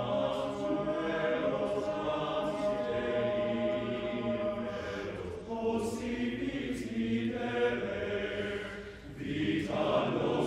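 Men's chorus singing a cappella in Latin, held chords moving slowly, with the hiss of sung 's' consonants. The sound thins and dips about nine seconds in, then the full choir comes back in louder near the end.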